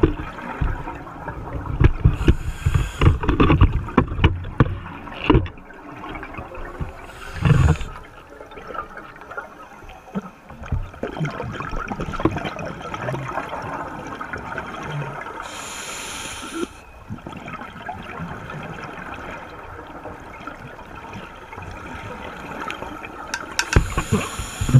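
Underwater sound of scuba diving: three hissing bursts of exhaled regulator bubbles, about two, seven and sixteen seconds in, over a steady underwater hiss. Low thumps and knocks in the first few seconds.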